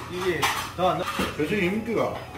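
Dishes and cutlery clinking at a restaurant counter, with sharp clinks about half a second and a second in, under voices talking indistinctly.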